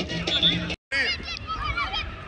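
Background music that cuts off abruptly just under a second in. After a brief gap comes live pitch sound of many high-pitched children's shouts and calls overlapping during youth football play.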